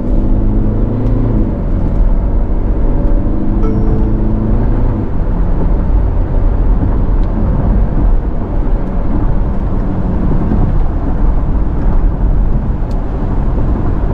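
Cabin sound of a Tata Curvv with the 1.5-litre turbo-diesel and DCA automatic cruising at about 95 km/h: a steady drone of road, tyre and engine noise, with the engine turning low at about 1,600–1,700 rpm.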